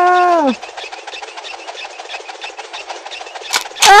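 Cartoon sound effect of a playground merry-go-round spinning fast: a rapid, even clicking rattle. A single sharp crack comes near the end, as the merry-go-round breaks off its post.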